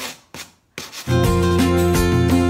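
Coarse 100-grit sandpaper rubbed by hand over a chalk-painted wooden headboard in short back-and-forth strokes, distressing the paint. About halfway through, louder music comes in over it.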